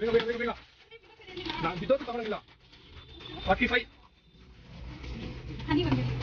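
Mostly short bursts of speech: a voice urging hurry, with gaps of quieter shop background and a low steady hum between.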